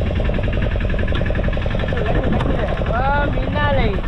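A fishing boat's engine running steadily with an even beat. Men's voices talk over it in the second half.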